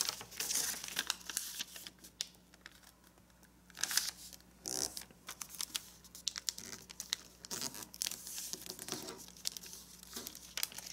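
A sheet of kami origami paper rustling and crinkling as it is folded in half by hand and the fold is pressed and smoothed flat. It comes in irregular spells of rustling, with a quieter pause about two to three and a half seconds in.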